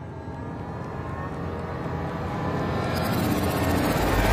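Edited-in intro riser: layered sustained tones and noise swelling steadily louder, with a hiss rising over the last second as it builds toward a hit.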